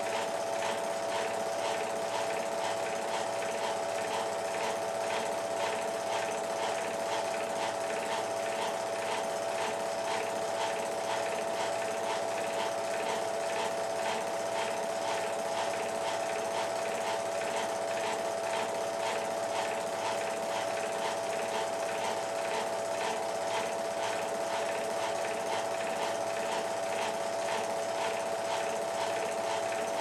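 Film projector running: a steady motor hum with a fast, even mechanical clatter from its film-advance mechanism.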